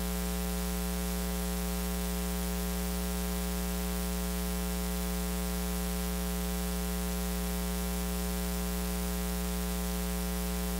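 Steady electrical mains hum with a buzzy stack of overtones over a constant hiss, picked up in the recording's audio chain.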